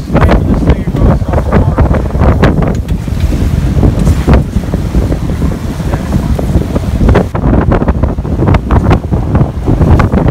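Wind buffeting the microphone in irregular gusts over the steady low rumble of a boat running at speed, with twin V8 outboard motors pushing it and the wake churning behind.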